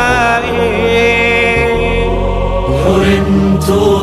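A voice singing an Arabic nasheed, drawing out long held notes over a steady low drone.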